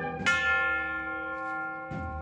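Cornet-and-drum band music: a sharp struck accent a quarter of a second in, then a held ringing chord that slowly fades.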